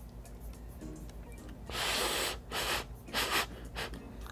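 A person blowing three short breaths over a forkful of stir-fried sotanghon noodles held at the mouth, the first the longest and loudest, before taking a bite.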